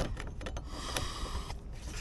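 A few faint clicks and scrapes of a screwdriver turning a tiny screw that holds a boat's lower rudder bearing, over a low steady background.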